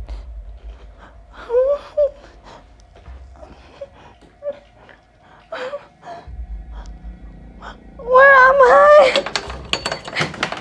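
A young woman whimpering and gasping in fear: a string of short, high whimpers, then a louder, longer cry near the end.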